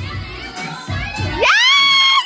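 A woman's excited high-pitched scream. It sweeps sharply up about a second and a half in and is held high for well under a second, over noisy party chatter.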